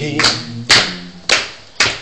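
Hands clapping in time to a song, four sharp claps about every half second, with the end of a sung note at the start.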